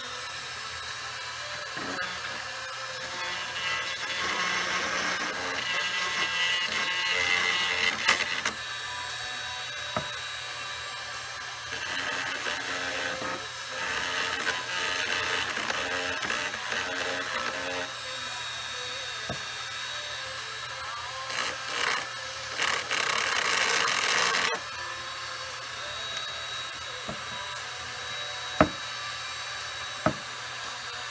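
Handheld rotary tool with a small diamond cutter running at high speed and grinding a corner off a shotgun's metal trigger so that it clears the safety, in spells of a few seconds of louder grinding; the grinding stops abruptly about 24 seconds in. A single sharp click near the end.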